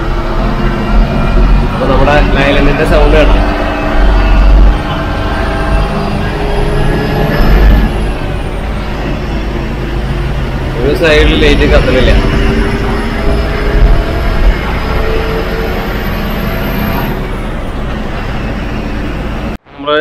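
Ashok Leyland tourist coach's engine and road noise heard from the driver's cab while driving, a deep steady rumble as it runs through a road tunnel. It cuts off suddenly near the end.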